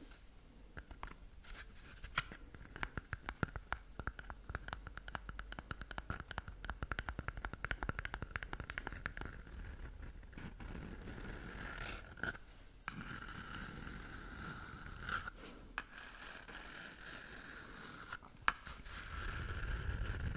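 Long fingernails scratching and scraping an empty cardboard toilet-paper tube held close to the microphone. The scratching is quick and dense at first, then turns into a slower, smoother rubbing broken by a few sharp clicks. A fuller rubbing comes at the very end.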